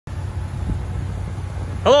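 Steady low rumble of the 2012 Ram 1500's 5.7-litre Hemi V8 idling, with a man's voice starting near the end.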